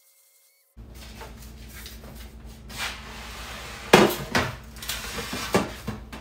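Kitchen bakeware being handled on a countertop: a foil-lined metal baking pan and other pans set down and moved, giving several sharp clatters and knocks, the loudest about four seconds in. The first second or so is nearly silent.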